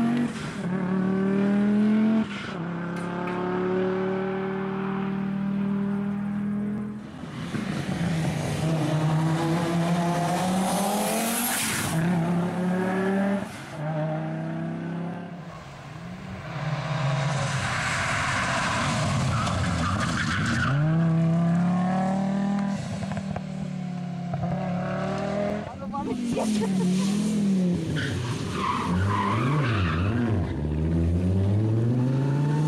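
Audi quattro rally car's turbocharged five-cylinder engine revving hard and changing gear, its pitch climbing and dropping again and again. It comes with stretches of tyre and gravel noise as the car drives through corners.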